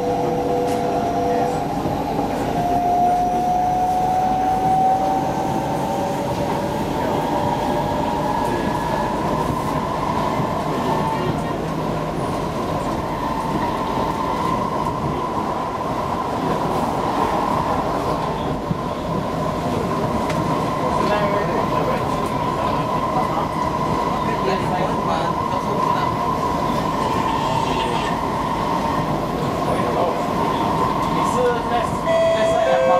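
Inside a moving SMRT Kawasaki C151B metro car: the steady rumble of the wheels on the rails with the whine of the traction equipment. Several whining tones glide slowly up in pitch during the first ten seconds, then settle into one steady high tone. A train passes on the neighbouring track about halfway through.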